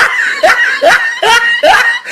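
A young woman laughing loudly and high-pitched, in quick repeated bursts, about five in two seconds.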